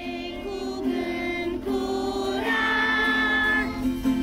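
A group of children singing together, accompanied by an acoustic guitar, with a long held note about halfway through.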